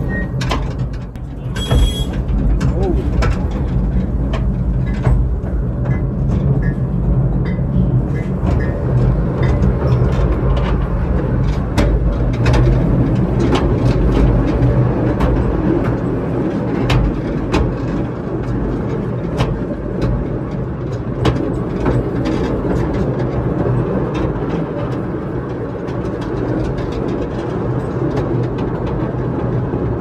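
A narrow-gauge mine railway train hauled by a small diesel-electric locomotive, running along the track. There is a steady low rumble with many sharp clicks and knocks of the wheels over the rails, and it passes into a stone tunnel.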